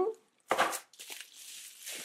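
Eyeshadow palette being slid out of its cardboard box and protective wrap: a short scraping rustle about half a second in, then softer rustling of the packaging.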